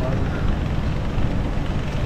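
Wind rumbling on the microphone: a steady low rush of noise.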